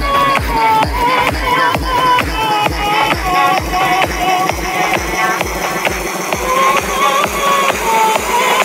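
Electronic dance music from a DJ mix: a steady, driving kick and bassline under short, chopped synth chords that repeat in quick succession.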